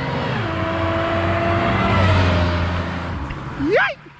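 Supercharged Chevrolet Monte Carlo SS accelerating hard, its engine note with supercharger whine dropping in pitch about a third of a second in and again about two seconds in. It grows louder to about the middle, then fades.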